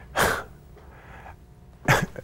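A man's short, sharp breath, then a quick intake of breath near the end, just before speech.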